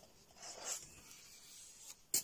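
A coloring book's paper page being turned: one short rustle about half a second in.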